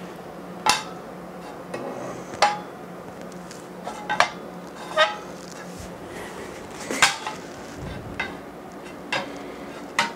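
Steel ruler and the 3D printer's aluminium bed clinking as the ruler is laid and moved across the bed to check it for flatness: about seven separate sharp metallic clicks, a few ringing briefly.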